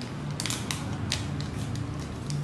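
Chocolate wrapper being opened by hand: a run of short, sharp crinkles and crackles, the clearest about half a second in and again about a second in.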